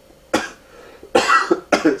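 A man coughing: one short cough, then a harsher run of coughs in the second half. It is the chesty cough of a cold that has gone onto his chest.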